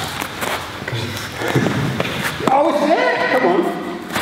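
A man's voice in a large, echoing hall, mostly in the second half, with several short knocks and thuds from sparring on the training mats in the first half.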